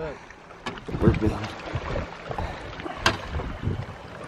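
Wind rumbling on the microphone with scattered small knocks and clicks from a landing net and a freshly caught bass being handled in a boat, one sharp click about three seconds in.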